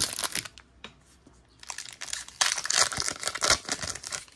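Plastic foil wrapper of a Donruss basketball card pack being torn open and crinkled by hand. A short burst of crackling comes at the start, then a brief pause, then a longer stretch of crinkling.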